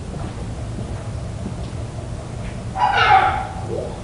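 A dog barks once, loudly, about three seconds in, over a steady low rumble of background noise.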